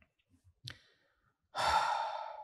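A man's voiced sigh that starts about one and a half seconds in and trails off, with a faint short click before it.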